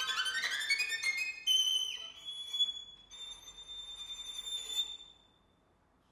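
Violin playing a fast rising run that climbs into high sustained notes, which stop about five seconds in.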